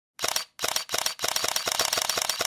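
Camera shutter clicking: three short bursts of clicks with brief gaps between them, then rapid continuous clicking from a little past one second, like a camera firing in burst mode.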